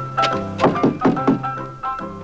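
A series of knocks on a house's front door, over background music with sustained keyboard notes.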